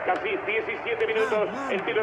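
A man's voice giving football match commentary over a steady background of noise.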